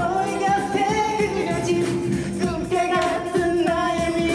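A man singing a pop song into a handheld microphone over a backing track with a steady beat, holding long notes.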